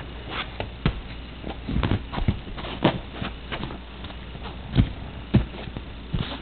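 Irregular soft thumps and taps as a baby handles and drops a plastic lattice ball on a couch cushion, with the sharpest knocks about three and five seconds in.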